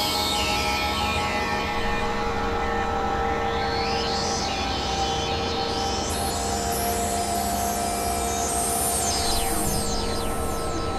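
Experimental electronic drone music: several steady synthesizer tones held under a noisy wash, with high-pitched glides sweeping down, then up, then down again near the end.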